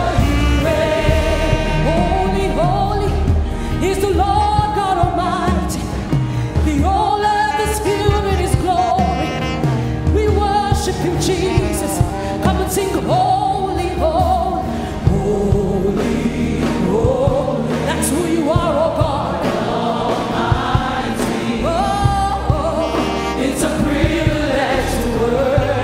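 Gospel worship song: singing voices over band accompaniment with regular drum hits.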